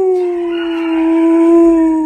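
A long, drawn-out animal howl, held at a nearly steady pitch that sags slightly, cutting off just after the end.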